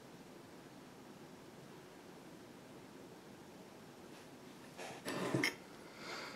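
Quiet room tone, then about five seconds in a brief scraping handling noise as the ceramic tile holding the clay piece is shifted on the cutting mat.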